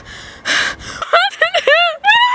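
A young woman gasping for breath in distress, then, about a second in, breaking into a quick run of short, high sobbing cries that rise and fall in pitch.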